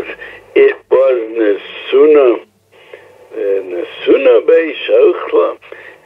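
Only speech: a man lecturing, with a short pause about two and a half seconds in.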